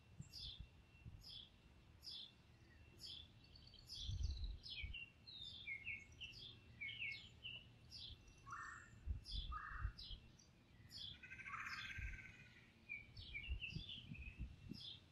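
Wild birds calling: one repeats a short falling chirp about twice a second, while other birds give two short calls a little past the middle and a longer, rougher call a couple of seconds later. Under them run a faint steady high tone and low gusts of wind.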